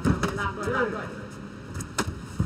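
Strikes landing in a Muay Thai fight: a sharp smack of a kick right at the start and another short impact near the end, with a person's voice calling out in between.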